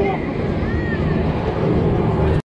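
Wind rumbling on the microphone of a camera aboard a swinging pirate-ship ride, steady throughout, with a few brief high voices of riders over it.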